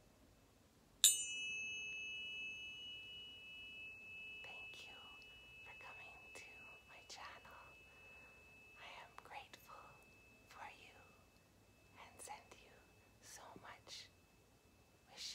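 A tuning fork struck once about a second in, with a brief bright metallic ping at the strike, then ringing a high, steady tone that slowly fades over several seconds. Soft whispering runs over the fading tone.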